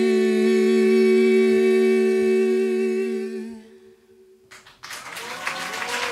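A woman and a man sing the final note of a French ballad duet together in harmony, holding it steady for about three and a half seconds before it fades. About a second later, audience applause starts and grows.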